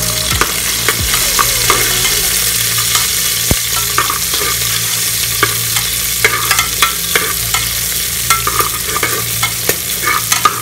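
Chopped garlic and chilli pieces sizzling in hot oil in an aluminium pot, stirred with a spatula that scrapes and knocks against the pot with many short clicks over a steady hiss of frying.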